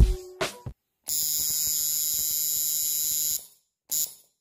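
The background music's last beats end, then a steady electric buzz with a low hum runs for about two seconds and cuts off sharply, followed by a brief blip at the very end.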